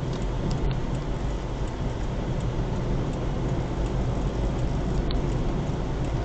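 Steady road and engine noise of a moving car, heard inside the cabin.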